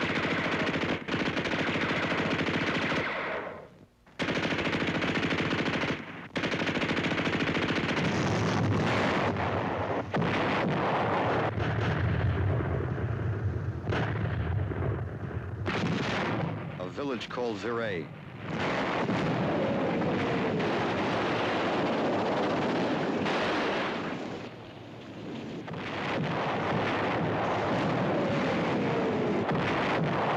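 WWII battle soundtrack: sustained machine-gun and rifle fire mixed with artillery explosions, with a deep rumble through the middle. The firing lulls briefly about four seconds in, and two falling tones sound in the second half.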